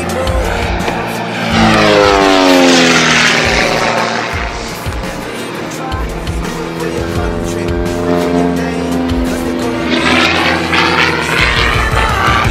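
Pitts S2B aerobatic biplane flying a low pass: its engine and propeller note drops steeply in pitch as it goes by about two seconds in. Another pass builds near the end, rising in pitch as the plane approaches. Music plays underneath.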